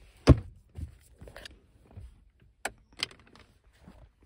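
A car's plastic centre console lid shut with a sharp clack about a third of a second in, followed by several lighter knocks and clicks of handling in the cabin.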